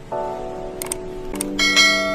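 Background music with held chords, two sharp clicks, then a bright bell chime ringing out near the end: the click-and-notification-bell sound effect of a subscribe-button animation.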